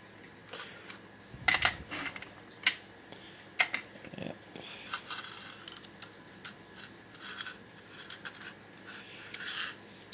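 Small metallic clicks and rattles from hand-priming rifle brass: loose primers shifting in the plastic tray of a hand priming tool and brass cases being handled. There are a few sharper clicks in the first four seconds and lighter rattling after them.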